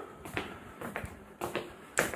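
Faint footsteps on a tiled floor: a few soft taps about half a second apart, over quiet room tone.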